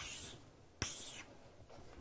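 Pen or marker writing on a board: two short strokes, the first at the start and the second about a second in, each beginning with a tap as the tip meets the surface.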